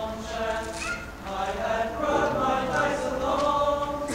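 Large mixed honor choir singing in harmony, several voice parts holding chords that shift every half second to a second.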